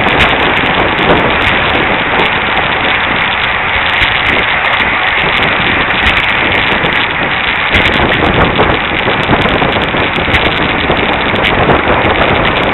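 Steady, loud rush of wind on a bicycle-mounted camera's microphone while riding at racing speed, with the hiss and rumble of road-bike tyres on the road.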